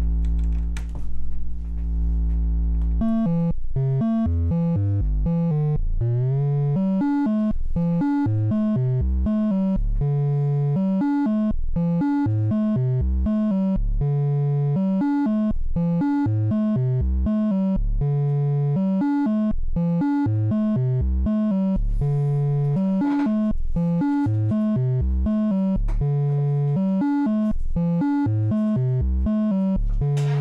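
Noise Reap Foundation Eurorack module used as a deep sine generator: a steady low drone with a few clicks as a patch cable goes in, then about three seconds in a sequenced run of short deep notes starts, changing pitch several times a second, with a rising pitch glide near six seconds.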